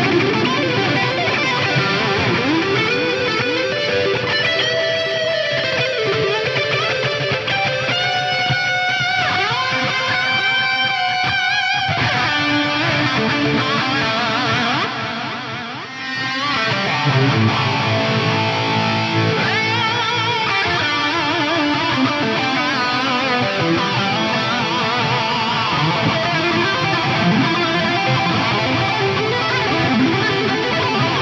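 Electric guitar lead played through a Fractal Audio Axe-Fx III: a high-gain Mark IV "USA Lead Mid Gain" amp model with input boost and fat switch on, fed by a vowel flanger at full mix plus stacked multi-tap and plex delays and gated reverb, giving a sweeping, heavily effected solo tone that is way, way over the top. The playing thins out briefly about fifteen seconds in, then picks up again.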